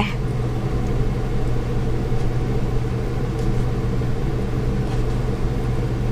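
Steady low mechanical hum, as of a running motor, with a few faint light ticks.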